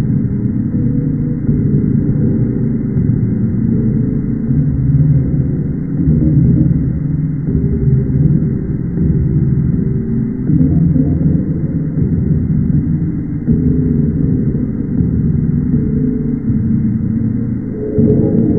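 A logo jingle slowed down drastically, heard as a loud, deep rumbling drone with drawn-out low notes and a muffled, dull top.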